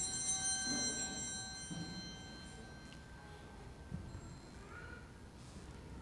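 A small bell struck once, its high ringing tones dying away over two to three seconds. A soft knock follows about four seconds in.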